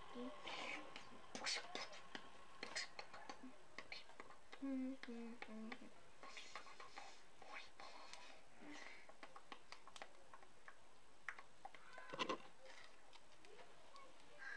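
Faint whispering and low, murmured speech, with many small scattered clicks and rustles from hands handling rubber loom bands.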